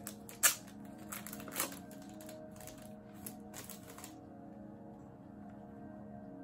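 Sharp plastic clicks and crackles from a CD case being handled and opened, the loudest about half a second in, the handling stopping about four seconds in. Soft background music with held tones plays throughout.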